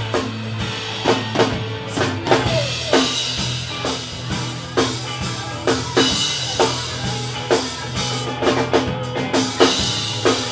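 Live rock band playing, the drum kit to the fore with kick and snare on a steady beat over electric guitars and bass.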